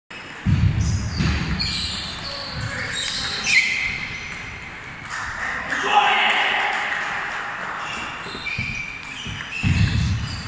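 Table tennis ball clicking against bats and table during a rally in a large, echoing sports hall, with voices from other players around. Several heavy low thuds stand out, about half a second in and again near the end.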